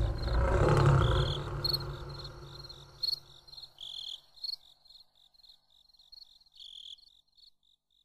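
A lion's roar dying away in the first two seconds, then crickets chirping steadily at about four chirps a second, with a few louder chirps in between.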